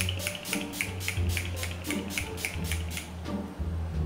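Urban Decay setting spray pumped in rapid spritzes onto the face, about five short hisses a second, stopping about three seconds in, over background music.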